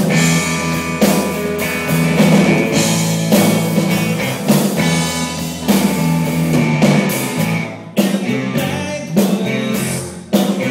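Live rock band playing a song on electric instruments: electric guitar, bass and drum kit, with a steady beat of drum hits about once a second. The sound drops briefly just before a loud hit near the end.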